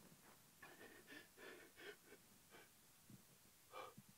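A young man's faint, ragged breathing: a string of short gasps about half a second apart, with one more just before the end.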